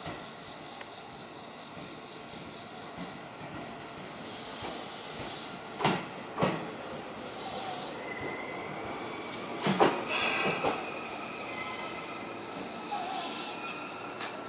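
Tobu 10030 series electric train arriving and braking to a stop. Several loud hisses of air come from the brakes, with a few sharp clacks from the wheels, and a thin steady squeal runs through the second half. A faint, quick high beeping is heard in the first few seconds.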